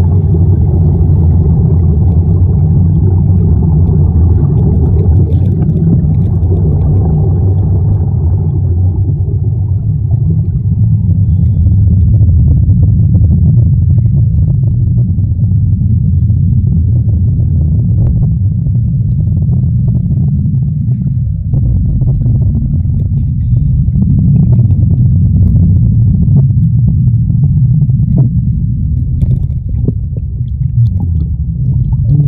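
Steady, muffled underwater rumble of air bubbling from surface-fed diving helmets and their air hoses, picked up by a camera under the water. It is fuller for the first nine seconds or so, then settles to a deeper rumble.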